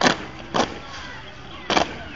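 A drill squad's boots stamping in unison: three sharp stamps, one at the start, one about half a second later and one near the end.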